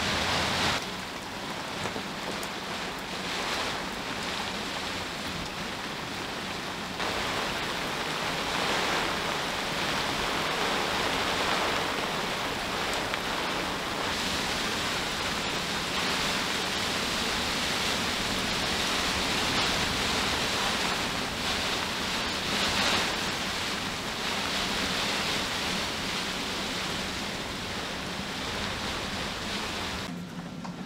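Tropical-storm wind and rain over choppy water, a steady rushing noise. Its character changes abruptly about a second in and again around seven seconds.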